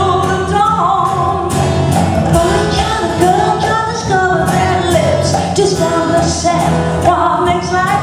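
Woman singing live into a microphone over amplified band backing with a steady beat.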